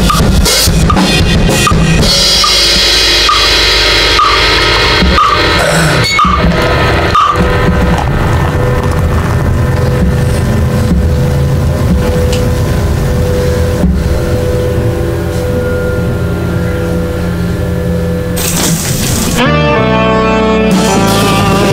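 A drum kit played along to a loud recorded rock track. The drumming thins out after the first few seconds while the track carries on with long held notes. About a second before the end, a rising sweep leads into a new section heavy with guitar.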